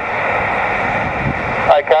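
Steady hiss of band noise from a portable 2 m transceiver's speaker, tuned to SSB in a gap between stations, with a low rumble under it. A voice comes through just before the end.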